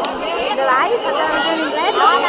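A crowd of children chattering and calling out at once, many high voices overlapping in a steady babble.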